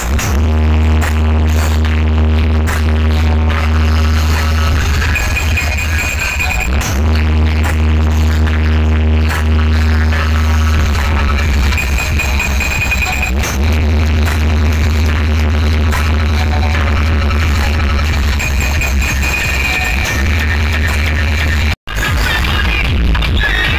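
Loud electronic dance music from a large DJ street sound system, with a heavy sustained bass that drops out twice and comes back in. A brief gap in the sound near the end.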